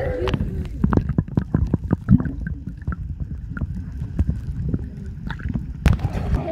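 Water heard through a submerged camera while snorkelling: a muffled low rumble of moving water with many short knocks and bubble pops. A sharp crack just before the end, as voices come back, fits the camera breaking the surface.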